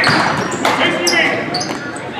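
Basketball being dribbled on a hardwood gym floor during play, with sneakers squeaking and voices calling out.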